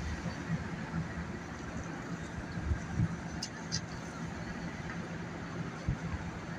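City street traffic: cars driving past close by over a steady engine hum, with a few short sharp clicks midway through.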